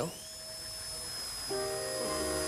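A handheld electric cast saw spinning up: a short rising whine that settles into a thin, steady high-pitched motor tone. Light comedic music with a bass line comes in about three-quarters of the way through.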